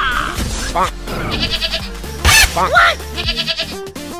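Background music with cartoon-style comedy sound effects laid over it, including short wavering bleat-like calls and a sharp noisy swish a little over two seconds in.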